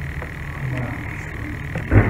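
A pause in the talk, filled with steady room noise: a continuous thin high whine over a low hum, with a brief low sound near the end.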